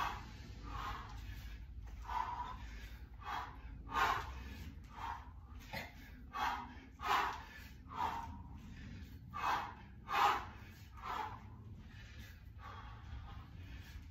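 A man's sharp, forceful breaths from the effort of repeated kettlebell half snatches, roughly one a second, fading to faint ones about twelve seconds in. A steady low hum lies underneath.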